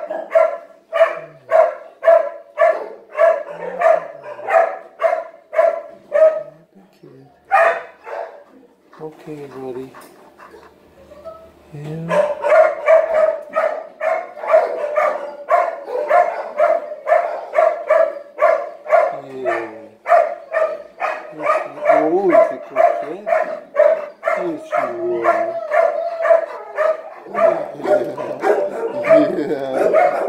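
Dog barking over and over at a steady pace of about two barks a second. The barking pauses for a few seconds about eight seconds in, then starts again.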